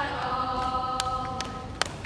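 A group of girls singing together, holding one long chord that breaks off near the end, with a few sharp handclaps over it.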